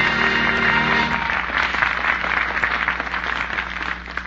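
The last held chord of a song with orchestra ends about a second in, and a studio audience applauds, heard through the narrow, dull sound of a 1940s radio transcription recording.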